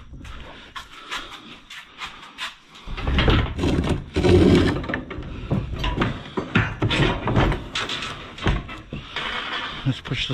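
Plastic bags rustling and knocks against a metal dumpster as someone moves about inside it. The noise gets louder, with heavier thumps and scraping, from about three seconds in.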